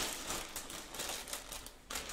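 A clear plastic bag rustling and crinkling as it is handled, with light irregular crackles.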